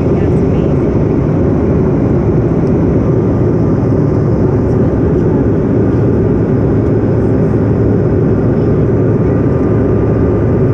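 Regional jet airliner cabin noise in flight, heard from a window seat: a steady low rush of engines and airflow. A faint thin steady tone joins in about three seconds in.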